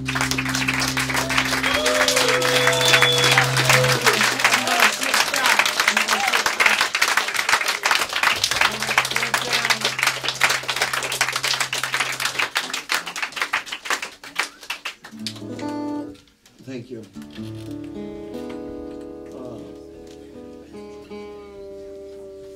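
Audience clapping and cheering, with one voice calling out about two seconds in. The applause dies away after about fourteen seconds, and separate acoustic guitar notes and chords are then picked and left to ring.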